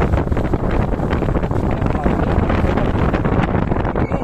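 Wind buffeting the microphone of a moving motorcycle, over a steady low rumble from the bike and its tyres on a rough road.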